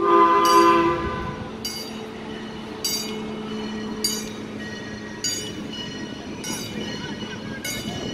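Steam locomotive whistle sounding one chord for about a second as the engine leaves the shed. Its bell then rings about once a second over a steady low hum.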